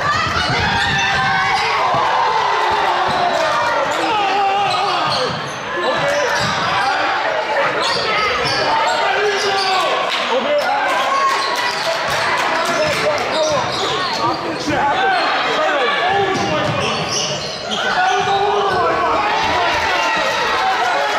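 Basketball game play in a gym: the ball bouncing on a hardwood court as players dribble, with voices calling out over it, all echoing in the hall.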